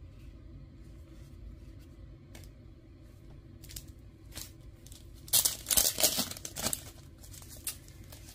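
Thin plastic card sleeves crinkling loudly for about two seconds, a little past the middle, as a sleeve is pulled out to hold a card, with a few light handling clicks before and after.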